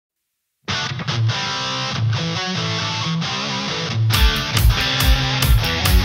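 Hard-rock song intro: after a moment of silence, electric guitar plays a chord riff alone, and drums with kick drum and cymbals join in on a steady beat about four seconds in.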